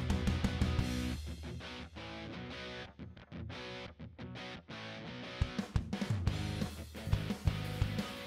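Background music led by guitar, with a steady beat that thins out about a second in and comes back strongly in the last few seconds.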